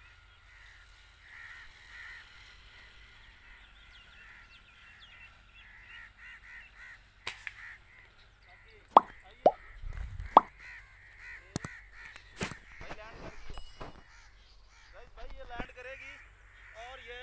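Birds chirping and trilling steadily in the open, with crow-like calls. From about seven seconds in comes a run of sharp cracks and clicks, among them the shot of a .22 air rifle; the loudest cracks fall near nine and ten seconds.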